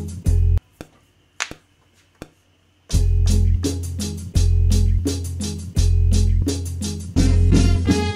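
Boom-bap beat playing back from an Akai MPC One: a deep bass line under regular drum and hi-hat hits. The loop cuts out just under a second in, leaving a couple of single hits, and restarts about three seconds in.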